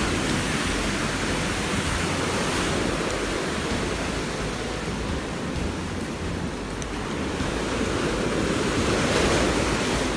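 Sea surf washing onto a sandy beach and rocks: a steady rush of breaking waves that swells near the end.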